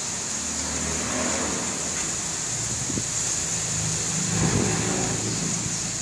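Steady hiss of a storm, with a low rumble underneath that builds and is loudest about four and a half seconds in.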